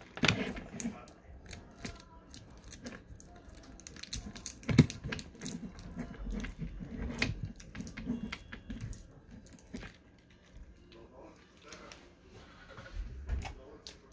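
Irregular clicks and rustling, with one sharper knock about five seconds in, and faint muffled voices in the middle.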